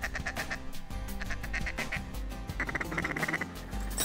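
A hand-held duck call blown in three quick runs of rapid quacks, calling to ducks in flight.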